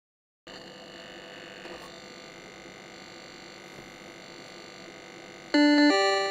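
Electronic drone of many held steady tones starting about half a second in. Near the end a much louder synthesized two-note chime sounds, the second note higher than the first.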